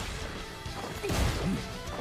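Anime fight sound effects: a heavy blow lands about a second in, over background music.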